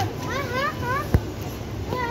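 A child's high voice speaking in a sing-song, with a single sharp thump just after a second in, over steady background noise.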